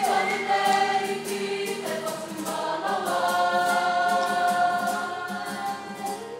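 A kapa haka group singing a Māori waiata together as a choir, holding long sustained notes.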